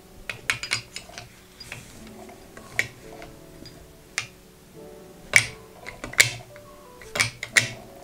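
Metal balls of a wooden pyramid puzzle clicking against one another and against the wooden tray as they are placed and moved, a scattering of sharp clicks, the loudest about five and six seconds in, over faint background music.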